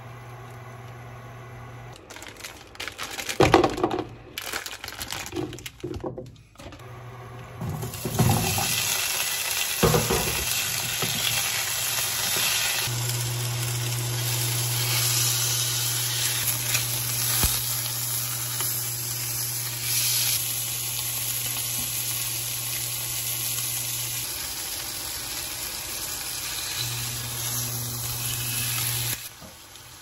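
Beef steak searing in hot oil in a frying pan: a loud, steady sizzle that starts about eight seconds in and stops just before the end. Before it come a few knocks and plastic rustling as the meat is handled, over a low steady hum.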